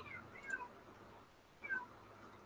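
Two faint, short high-pitched animal calls, about a second apart, each falling slightly in pitch.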